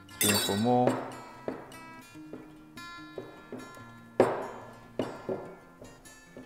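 Hands working pastry dough in a glass mixing bowl knock against the glass, with a sharp clink about four seconds in and lighter clicks around it, over soft acoustic guitar background music.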